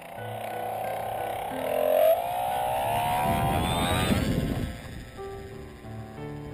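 RC motor glider's electric motor whining as it spins up, its pitch climbing steadily for a couple of seconds, with a rush of wind noise as it climbs away. Soft piano music plays underneath.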